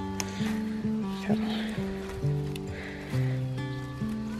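Background music: a gentle melody of held notes that change every half second to a second.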